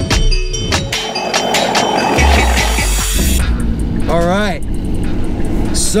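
Car engine and road noise, with a heavy low rumble in the first half. A man's voice briefly cuts in about four seconds in and again near the end.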